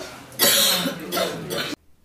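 A person coughing once, loudly, about half a second in, followed by a fainter voice. The sound cuts off suddenly just before the end.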